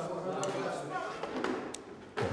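Indistinct voices talking quietly, with a couple of small clicks, one about half a second in and one near the end.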